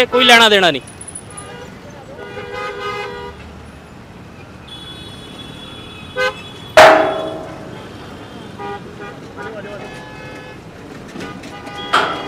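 Road traffic with several short vehicle horn toots from motorcycles and cars. About seven seconds in comes one sudden loud bang that rings briefly.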